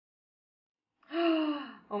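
Silence for about a second, then a woman's voiced gasp of surprise, one sound with a falling pitch, running straight into her exclamation "Oh" at the very end.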